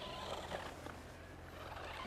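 Faint whir of a Deva Toys remote-control off-road truck's small electric motor as the truck climbs over dirt.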